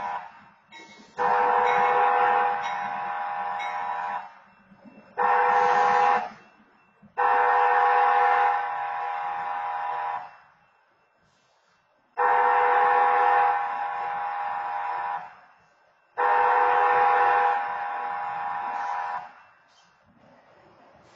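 Freight locomotive air horn blowing a chord for a grade crossing. The tail of one blast fades out, then come a long blast, a short blast and a long blast, followed by two more long blasts about 3 s each. Each blast is loudest in its first second, then settles steady.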